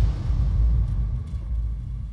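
Deep bass boom of an outro sound effect, hitting just before and dying away slowly as a low rumble.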